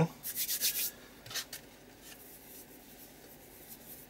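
Hands rubbing and pressing glued die-cut circles down onto a paper art-journal page. There are a few quick scratchy strokes in the first second and one more about a second and a half in.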